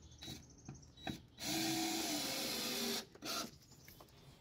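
Cordless drill running on a deck screw in a wooden deck board: the motor runs for about a second and a half, its pitch dropping slightly near the end as it loads up, then gives a second short burst. A few light clicks come before it.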